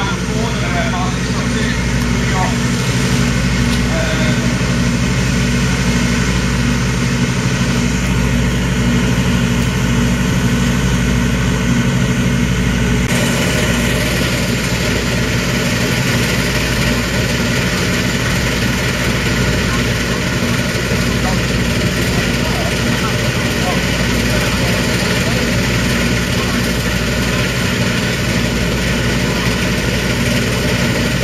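Diesel engine of a 1991 Sampo-Rosenlew 130 combine harvester running steadily at idle, with a steady low hum. About halfway through a higher rushing noise grows louder on top of it.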